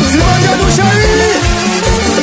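Haitian rara band music: drums keep a quick, steady beat under gliding melodic lines.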